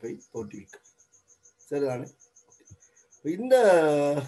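Cricket chirping steadily, a thin high pulse repeating about five times a second, under a man's lecturing voice.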